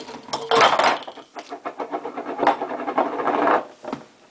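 A stacked tower of jars and a plastic creamer bottle toppling onto a wooden table, then the glass jars rolling on the tabletop with a continuous rough rumble, with a sharper knock past the midpoint.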